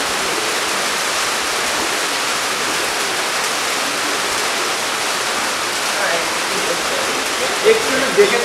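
Steady hiss of rain, even and unbroken, with faint voices coming in near the end.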